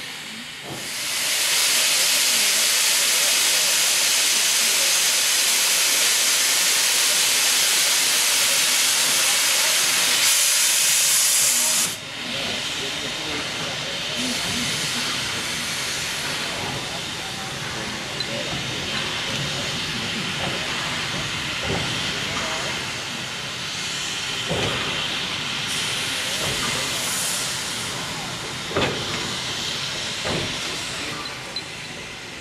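Victorian Railways R class steam locomotive blowing off steam: a loud hiss starts about a second in and cuts off suddenly about ten seconds later. A quieter steam hiss follows, with a few knocks near the end as the locomotive moves off the turntable.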